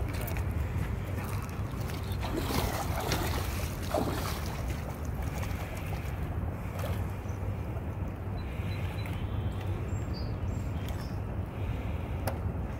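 Steady wind noise on the microphone, with water splashing around a person's legs as he wades through shallow river water.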